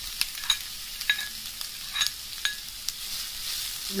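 Sliced onions sizzling as they fry in hot oil in a pan, a steady hiss with a few sharp ticks in the first half and again around two seconds in.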